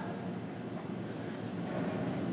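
Steady low room noise, a constant hum like air conditioning, with no speech.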